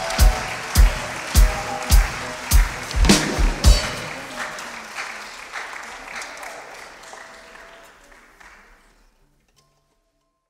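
An orchestra of Uzbek national instruments ends a piece on a run of loud accented chords with deep drum beats, about one every half-second, the last three coming closer together. Audience applause follows and fades away to silence.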